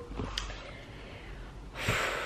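A person's sharp intake of breath near the end, a quick noisy gasp, after low room noise and a faint click.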